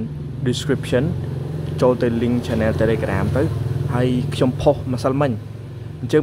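A person talking, over a steady low rumble that drops away near the end.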